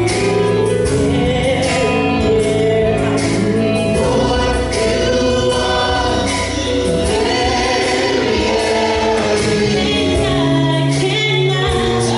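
Gospel praise team and choir singing a worship song with a live band: a lead voice over sustained choir harmonies, with drums and cymbals keeping time.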